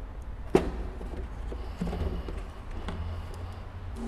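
A screwdriver prying a plastic headlight lens off its glued housing: one sharp click about half a second in, then a few faint knocks and scrapes over a steady low rumble.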